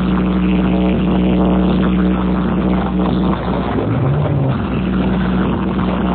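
Loud electronic dance music with heavy bass, played over a street DJ sound system. A low note is held through most of it, with a short pitch glide about four seconds in.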